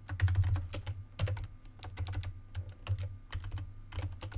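Computer keyboard typing: a quick, uneven run of key clicks as code is copied and pasted.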